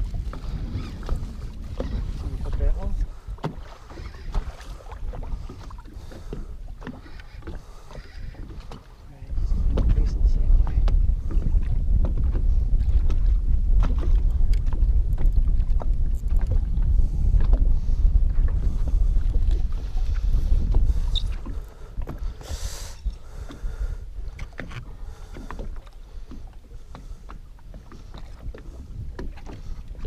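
Wind buffeting the microphone: a loud low rumble starts suddenly about nine seconds in and drops away about twelve seconds later. Scattered small knocks and clicks are heard around it, with a brief hiss-like burst just after the rumble ends.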